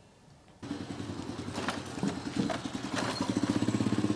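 Small step-through motorcycle engine running with a steady pulsing note. It starts abruptly about half a second in and grows louder toward the end.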